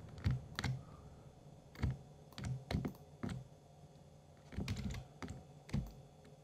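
Irregular clicking of a computer keyboard and mouse: about a dozen short, sharp clicks, some in quick pairs, while the Illustrator view is zoomed and panned.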